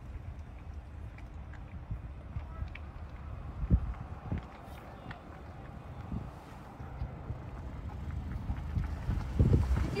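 Low steady rumble with a few knocks from a phone being handled, one sharp knock a little under four seconds in and a cluster just before the end.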